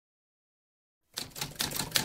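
Typewriter keystrokes clacking in quick succession, a typing sound effect for the title text being spelled out. They start about halfway through, out of silence.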